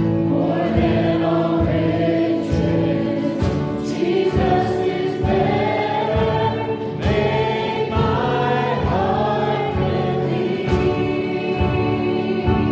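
Live worship band playing a worship song: acoustic guitar, drum kit and keyboard, with several voices singing together over a steady drum beat.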